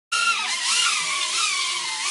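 BetaFPV Beta75 micro quadcopter's motors and propellers whining in flight. The pitch wavers up and down as the throttle changes, and drifts slightly lower toward the end.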